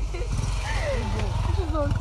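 A small motorcycle's engine running as it rides past, a low rumble that grows slightly louder, with voices talking faintly over it.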